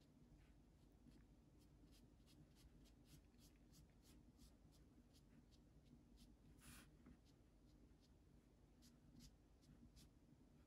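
Faint, quick dabs of a watercolour brush tapping paint onto paper, about three or four a second at first and sparser later, with one longer brush stroke about two-thirds of the way through, over a low room hum.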